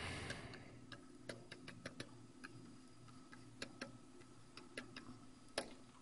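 Faint, irregularly spaced light clicks of a stylus tapping and dragging on a drawing tablet while handwriting, over a low steady hum.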